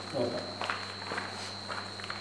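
Cloth wiping marker ink off a clear plastic sheet over a board, in soft repeated rubbing strokes about two a second.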